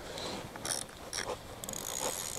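Light clicking and rustling of a carp rig being handled in the fingers, with a quick run of fine clicks near the end.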